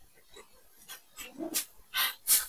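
Marker writing on a whiteboard: several short, faint strokes that grow louder toward the end as a word is written out and underlined.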